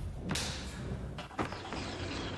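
Dramatic editing sound effects over a low rumbling bed: a sharp hit with a trailing swoosh about a third of a second in, then two sharp whip-like cracks a little after a second in.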